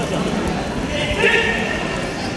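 Raised voices shouting in a large gymnasium hall during karate sparring, with light knocking footfalls on the mats.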